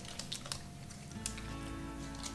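Soft, scattered mouth clicks of someone chewing a bite of milk chocolate with puffed rice. About a second in, faint background music enters with a low held note.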